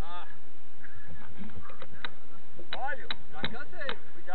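A person's voice calling out in short, quick sounds, with no clear words, over faint road noise.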